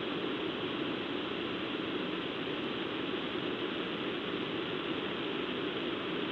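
A steady, even rushing noise with no breaks or distinct events, far quieter than the commentary around it.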